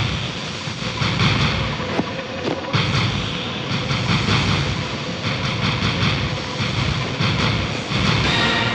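Action-film soundtrack: a loud, dense wash of noise effects mixed with background music. There are a few sharp hits around two to three seconds in.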